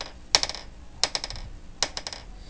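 Maple-ply Berlinwood fingerboard deck popped tail-first against a tabletop, giving sharp wooden clicks in quick clusters: a pair about a third of a second in, a rapid run of four or five around one second, and a couple more near the end.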